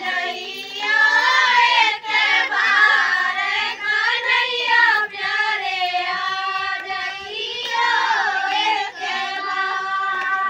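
Women and girls singing a devotional bhajan to Krishna together, one sustained melody line without instruments.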